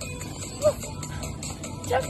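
Dance music for a Zumba routine, with a steady beat. A short, high-pitched cry from a woman's voice comes about two-thirds of a second in, and another voice rises near the end.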